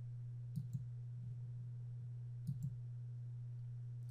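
Computer mouse button clicking: two quick pairs of clicks about two seconds apart, as map topics are expanded, over a steady low hum.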